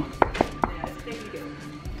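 Quiet background music with sustained notes, and three sharp clicks in the first second.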